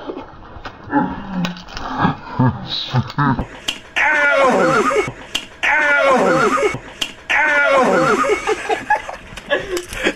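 A person gives three long, loud cries in a row, each falling in pitch. A few sharp clicks come just before the first cry.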